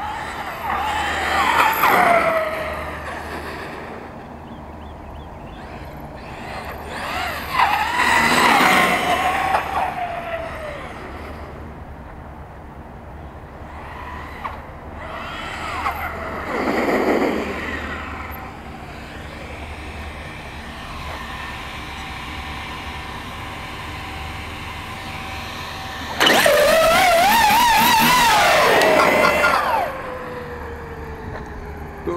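Traxxas X-Maxx 8S RC monster truck's brushless electric motor whining through several runs, its pitch rising and falling with throttle. The last run, near the end, is the loudest, with a held, wavering whine that cuts off suddenly.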